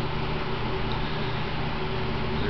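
Steady low hum with an even hiss: background room noise from a running appliance, unchanging throughout.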